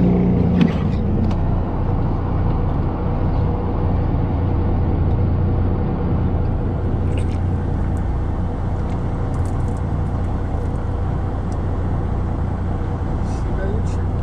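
A fishing boat's engine running with a steady low hum, with a few faint clicks partway through.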